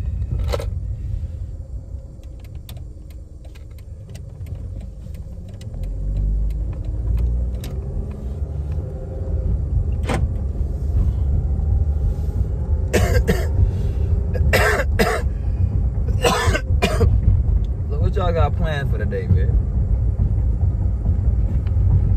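Car engine and road noise heard from inside the cabin while driving. The low rumble grows louder as the car gets moving, with a rising engine note partway through. Several short, sharp noisy bursts stand out in the second half.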